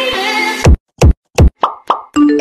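Music that ends about half a second in, followed by about five quick plopping sound effects. Each plop drops sharply in pitch, and silence falls between them.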